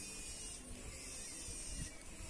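Faint, steady outdoor background noise with a low rumble and a soft hiss.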